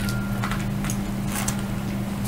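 Steady low electrical hum, with faint rustling as a suede ankle boot is handled and turned over.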